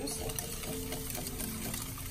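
Wire hand whisk beating raw eggs and sugar in a glass bowl, a steady run of quick stirring strokes.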